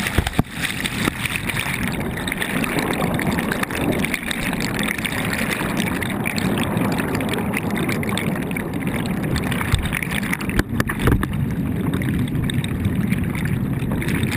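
Water rushing and bubbling against a camera at or just under the surface, as a steady churning noise. A couple of sharp knocks come just after the start and about eleven seconds in.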